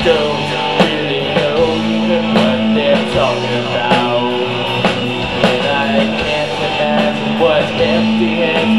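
Live rock band playing: distorted electric guitars, bass guitar and a drum kit keeping a steady beat.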